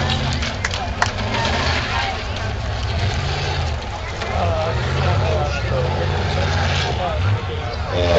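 1995 Jeep Grand Cherokee's engine revving up and down as it drives over dirt jumps and bumps, with the pitch rising and falling several times.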